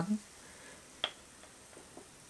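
A single short, sharp click about a second in, as the screw cap of a drink bottle is twisted open.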